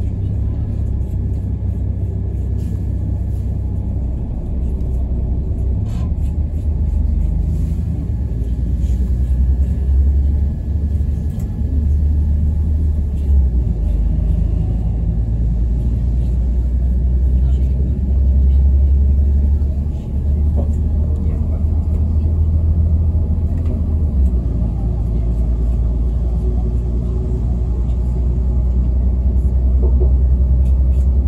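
Low, steady rumble of a passenger train heard from inside the carriage as it pulls out of a station and gathers speed, with a few light clicks from the running gear.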